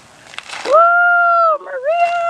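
A woman's high-pitched, loud celebratory squeal held for nearly a second, then a second cry that dips and swings back up.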